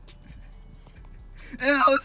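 Faint wet chewing and mouth clicks from someone eating a raw canned sardine. Near the end a loud drawn-out voice cuts in.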